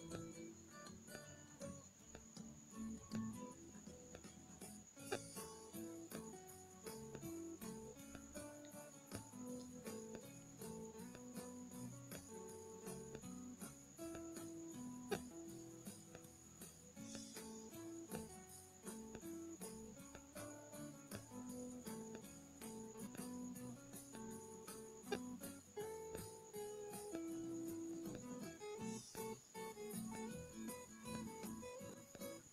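Quiet background music: a stepping melody of held notes over a steady ticking beat.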